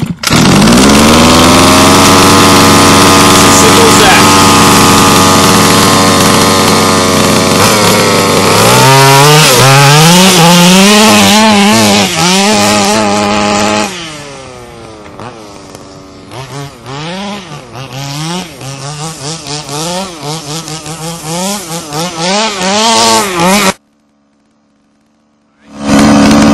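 HPI Baja 5B's small two-stroke gas engine firing off the pull start and running at a steady high fast idle, then revved up and down in repeated blips. At about fourteen seconds it gets quieter as the buggy drives off up a hill, still revving up and down and bogging a little on the climb, before the sound cuts off suddenly near the end.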